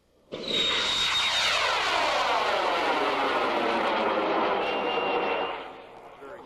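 High-power rocket's M-class solid motor igniting and burning: a sudden loud start about a third of a second in, then a steady, loud rushing noise with a sweep that falls in pitch as the rocket climbs away. The sound fades near the end.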